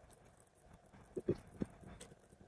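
Hands handling a whole raw chicken on a plate: faint rustling, then three short, soft, low thumps in quick succession about a second in.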